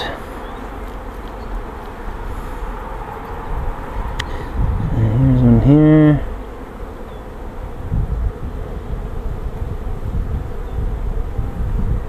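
Honeybees buzzing around an open hive over a steady low rumble. About five seconds in, a louder low drone rises in pitch and holds for about a second before stopping.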